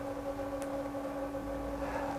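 A pause in speech: only a faint, steady hum with a little background hiss.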